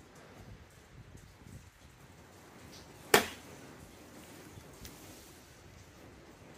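A gap wedge striking a golf ball off a driving-range mat on a chip shot: one crisp click about three seconds in, with a brief ring after it.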